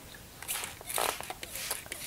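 A sheet of watercolor paper being handled and slid into place on paper towels: a few short rustles and scrapes.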